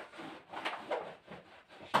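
A few short brushing, scuffing strokes of hand cleaning on the floor, then a sharp knock near the end.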